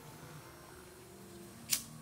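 A disposable flint lighter struck once about a second and a half in: a short, sharp rasp of the spark wheel as it lights.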